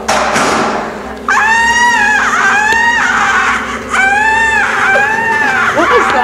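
A noisy thud-like burst, then a run of long, shrill human screams, four or five in a row, each rising and falling in pitch.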